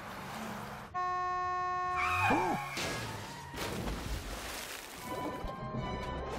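Cartoon sound effects of an SUV crashing off a bridge into a river: a sustained blaring tone about a second in, then a crash and rushing, splashing noise, under music.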